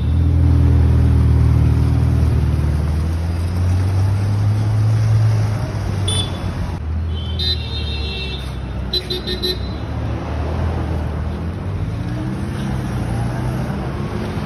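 Ferrari F8 Tributo's twin-turbo V8 engine running low and loud as the car moves off in traffic, fading after about six seconds. Short car-horn toots sound a few times in the middle.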